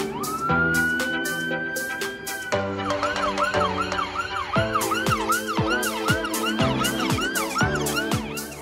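An emergency vehicle siren holds a slow wail for about the first two and a half seconds, then switches to a fast yelp of about two and a half cycles a second. Background music with a steady beat plays throughout.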